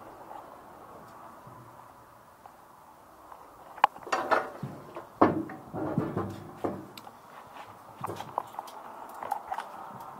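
Rusty hanging metal bucket and its hinged linkage being jiggled by hand, clanking and rattling in a string of irregular knocks starting about four seconds in.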